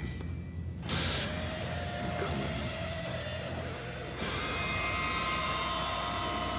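Horror-trailer sound design: a steady low drone, with a sudden surge of hissing noise about a second in and another step up about four seconds in that brings in held high tones.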